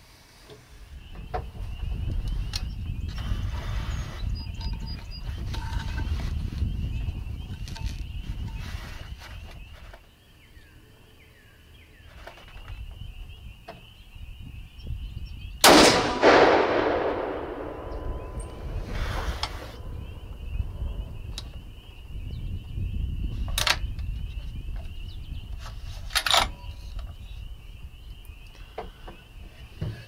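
A single .300 Winchester Magnum rifle shot about halfway through: a sharp crack, the loudest sound, with a long echo trailing off over a few seconds. A low rumble comes before and after it, with a steady high-pitched trill in the background.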